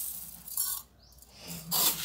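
Dry uncooked rice scooped with a cup from a plastic bin and poured into a metal pot, measured out cup by cup: a rustling hiss of grains that tails off, then a second louder pour near the end.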